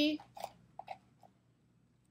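Duct tape being wrapped and pressed around aquarium tubing on a PVC elbow: a few faint, short crackles in the first second and a half.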